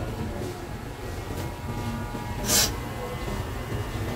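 Electric hair clippers running with a steady buzz as they cut short hair, with a short hissing burst about two and a half seconds in.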